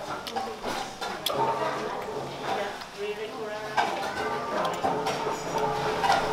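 Restaurant dining-room background: indistinct voices and music, with scattered light clicks.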